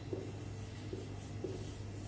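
Marker pen writing on a whiteboard: three short strokes over a steady low hum.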